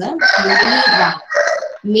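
A bird calling loudly once for about a second, with a short trailing note.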